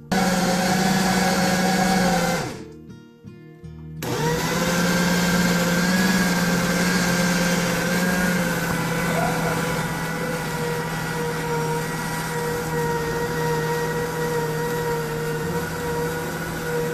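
Food processor motor running with ground beef in the bowl, grinding it into a smooth meatball paste. It runs for about two and a half seconds, stops for a moment, then starts again and runs steadily on.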